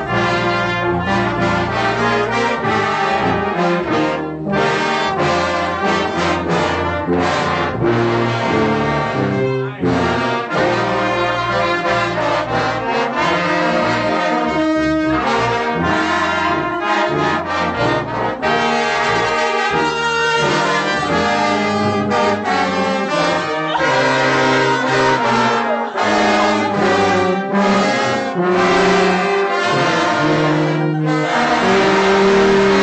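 A brass band playing a piece together, the tubas and euphoniums carrying a moving bass line under the higher brass; loud and continuous.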